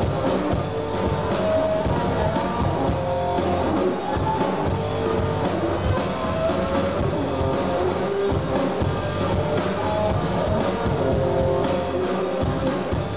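Live indie-rock band playing: electric guitar and bass guitar over a drum kit, one steady, unbroken stretch of the song.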